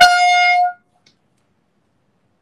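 A single loud, steady horn-like tone lasting under a second, cut off sharply, with no change in pitch.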